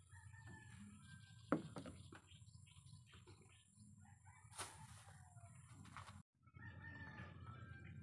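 Faint rooster crowing and chicken calls, with a sharp knock about a second and a half in and another about four and a half seconds in, the first the loudest sound. A low rumble runs underneath.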